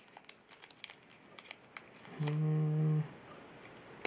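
Foil trading-card packs crinkling faintly as they are handled and shuffled in the hands, with a short, steady 'hmm' from a man's voice a little past halfway.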